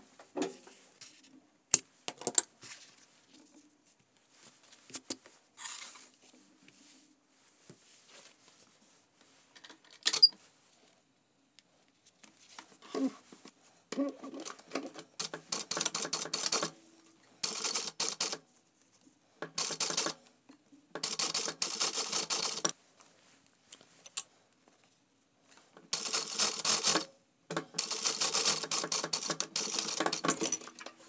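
Industrial lockstitch sewing machine stitching fabric in short runs of one to two seconds with brief stops between, starting about halfway through. Before that, only a few scattered clicks and light fabric handling.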